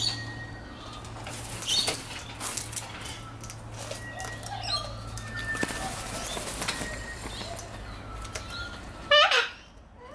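Sulphur-crested cockatoo wings flapping as the bird comes down onto a wooden railing, with scattered light knocks and rustles. A short, loud, harsh burst with falling pitch comes near the end.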